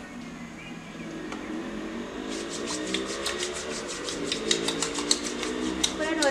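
Wet hands rubbing a bar of homemade beeswax and glycerin soap into a lather: a quick run of small squishy, clicking squelches that starts about two seconds in and grows busier.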